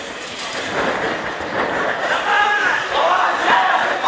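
Several young men shouting and whooping in an echoing gym hall, the calls growing louder in the second half.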